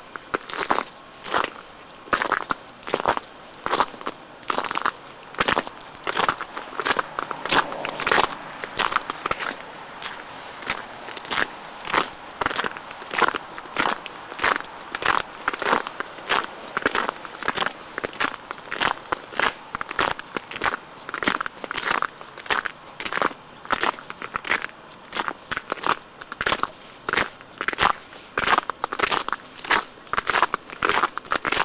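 Footsteps crunching through crusted snow and sleet at a steady walking pace, about two steps a second.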